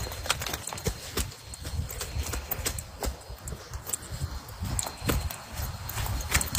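Someone walking through forest undergrowth: irregular footsteps on leaf litter, with sharp snaps and knocks and leaves brushing past.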